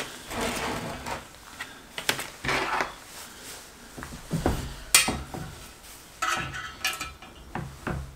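Small metal fasteners and corner gussets clinking and tapping on a wooden table as they are handled and fitted together, with several separate sharp clicks spread through.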